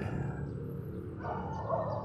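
A dog in the background, heard as a brief muffled sound a little past a second in.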